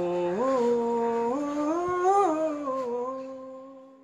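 A man singing unaccompanied, a wordless held melody hummed or on a vowel. His long notes step up in pitch and back down, and the voice fades out near the end.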